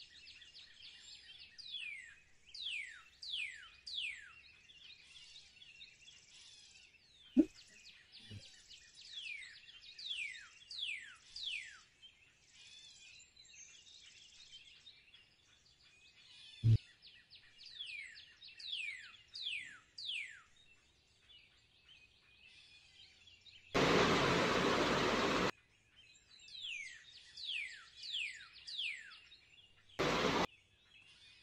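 Birds chirping: quick, high, downward-sliding chirps in runs of several, coming and going. A few sharp clicks come in the first half, and a loud burst of steady hiss lasts about two seconds near the end.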